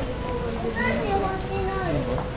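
A high-pitched voice calling out for about a second in the middle, its pitch gliding up and then falling, over a steady background tone.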